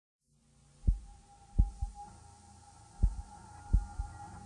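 Deep thumps, five in all, a couple of them close together in pairs, over a steady low hum and a faint high tone.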